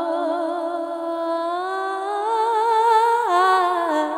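Unaccompanied wordless singing by a single voice, with vibrato. The melody climbs about halfway through and drops back near the end.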